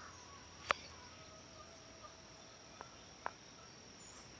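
Faint, steady high-pitched trilling of insects, with three short sharp clicks: the loudest just under a second in, two fainter ones near the end.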